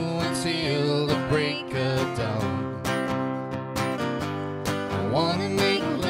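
Acoustic guitar strummed in a steady rhythm, playing a country song live, with a voice holding and sliding notes near the start and near the end.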